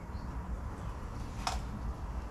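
Glass beer bottle taken down and handled, with a single short clink about one and a half seconds in, over a low steady rumble.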